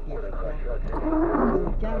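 A person's voice in the car cabin, swelling about a second in into a drawn-out, rough vocal sound over a steady low hum.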